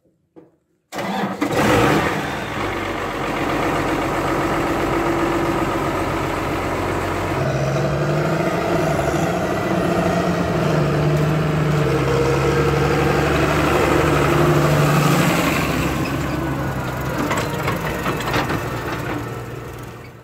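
Case MX135 tractor's diesel engine running as the tractor drives along. The sound starts abruptly about a second in, its pitch steps up and down several times from about seven seconds in, and it fades out near the end.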